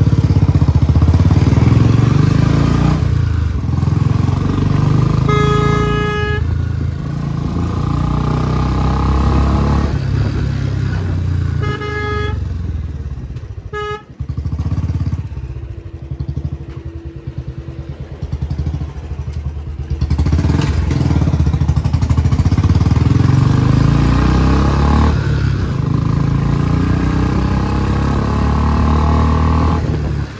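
Royal Enfield Bullet 350's single-cylinder engine running loud through an aftermarket 'Mini Punjab' silencer while riding, its exhaust dropping to a quieter stretch for a few seconds midway before pulling hard again. A vehicle horn sounds for about a second around five seconds in, then gives two short toots around twelve and fourteen seconds.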